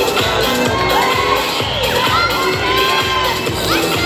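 Audience cheering, with many high shouted calls that rise in pitch and hold, as a solo dancer is announced and takes the stage.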